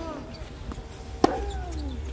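Tennis rally on an outdoor hard court: a faint tennis ball impact from the far end right at the start, then a loud, sharp ball impact nearby a little over a second in, each followed by a brief falling ring.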